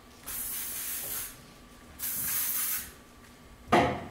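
An aerosol spray can sprayed in two hissing bursts of about a second each, followed near the end by a single sharp knock.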